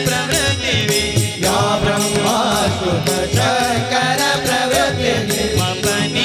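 Devotional bhajan: a male lead voice sings a melody over a harmonium's held chords, with small hand cymbals keeping a steady beat of about three strikes a second.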